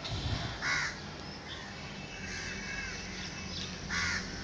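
A bird calling in the background, with one short harsh call under a second in and another near the end, over a low steady hum.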